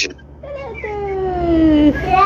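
A long, drawn-out, high call with a clear pitch that slides slowly downward for about a second and a half. A second, rising-then-falling call begins right at the end.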